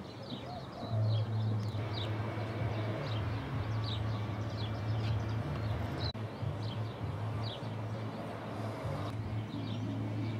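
Small birds chirping repeatedly, short falling notes, over a steady low hum that grows louder about a second in.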